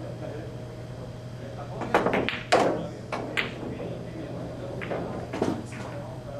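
Pool shot: the cue tip striking the cue ball about two seconds in, followed by sharp ball-on-ball clicks and knocks as the red object ball is driven into a pocket, the loudest click about half a second after the first. A few softer knocks follow near the end.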